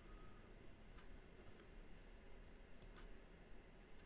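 Near silence: faint room tone with a few soft clicks from a computer mouse, one about a second in and two close together near three seconds in.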